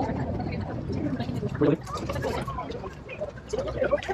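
Indistinct voices of people talking nearby, with no clear words, over a low steady background rumble.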